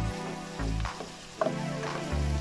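Pork, pork liver and onions sizzling in oil in a pot as they are sautéed and stirred with a spatula, under background music with a steady bass beat.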